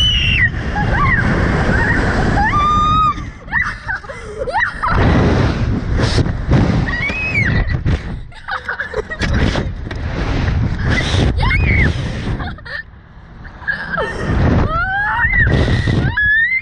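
Heavy wind rush buffeting the on-board microphone of a SlingShot reverse-bungee ride as the capsule is launched and swings through the air, with repeated high-pitched screams from the two riders. The wind dips briefly about three-quarters of the way through.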